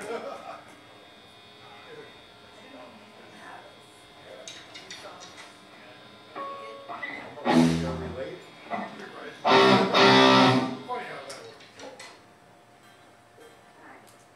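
Electric guitars played softly between songs, with two loud strummed chords: a short one about seven and a half seconds in and a longer one around ten seconds.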